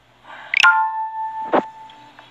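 An electronic alert tone: a quick rising sweep about half a second in, then a steady tone of several pitches held until near the end, with a sharp click about one and a half seconds in.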